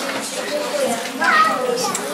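Many children's voices chattering and calling at once, with one higher child's voice rising above the rest about a second in.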